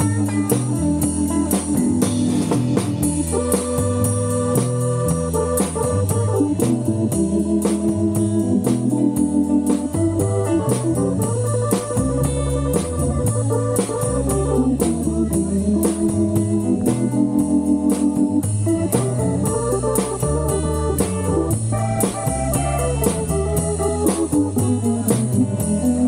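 Live band playing an instrumental stretch with no singing: an electronic keyboard with an organ sound leads over a stepping bass line and a steady drum beat, with electric guitar.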